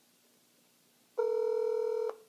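Cell phone on speakerphone playing the ringing tone of an outgoing call: one steady electronic tone that starts a little after a second in and is cut off about a second later.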